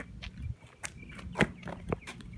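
Footsteps on asphalt with a few short, sharp taps, the loudest about one and a half seconds in.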